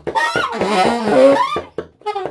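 Baritone and tenor saxophones improvising freely in short, broken phrases, with pitches that bend up and down and stop for brief gaps.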